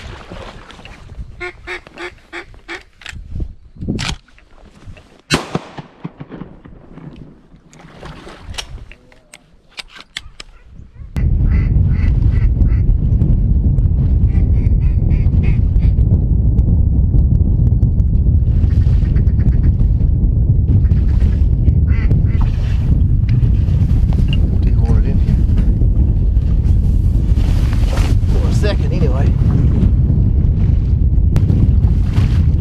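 A run of duck quacks, short repeated calls, for about the first ten seconds. At about eleven seconds in, loud steady wind starts suddenly, buffeting the microphone, and continues with faint calls now and then beneath it.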